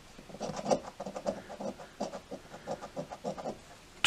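Lottery scratch ticket being scratched off with a round scraper disc: quick back-and-forth rubbing strokes, several a second, as the coating comes off a number spot.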